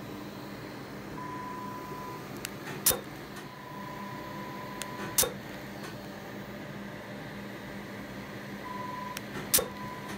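Dermatology laser firing single pulses: three sharp snaps spread a few seconds apart, each preceded by a steady beep tone, over a steady machine hum.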